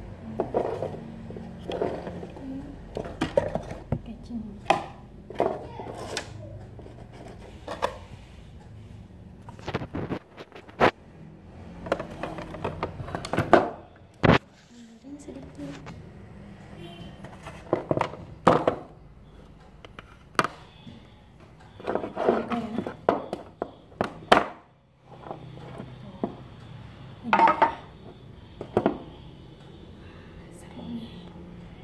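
Handling of a tight-fitting, lidded watch box: a series of sharp clicks and knocks as the lid is worked loose and taken off.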